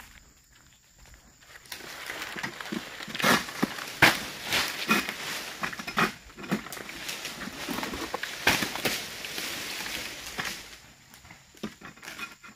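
A long-pole sickle (egrek) hooks and saws at oil palm fronds: a dense rustling and scraping of fronds, with several sharp cracks. The sound starts about two seconds in and dies away near the end.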